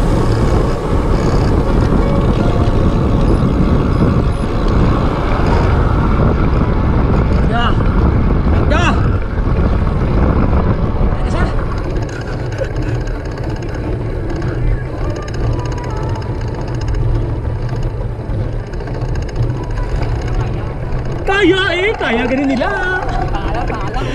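Wind buffeting the microphone of a camera on a road bike moving fast, with the rumble of tyres on a concrete road. It is loudest in the first half and eases after about halfway. Brief voices are heard near the end.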